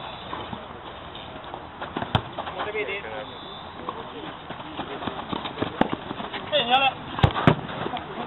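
Sharp thuds of a football being kicked on an artificial-turf pitch, one about two seconds in and two in quick succession near the end, amid players' short shouts.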